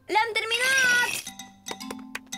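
A cartoon kitten's dubbed voice speaking briefly, then light background music with short struck notes over a steady low tone.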